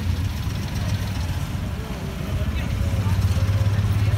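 A steady low engine hum that grows louder in the second half, with faint voices of passers-by under it.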